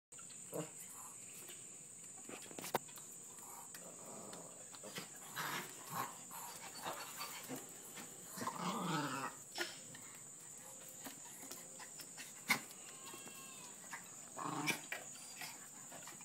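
A dog gives short whines and yips of greeting, with a couple of sharp knocks between them, over a faint steady high-pitched tone.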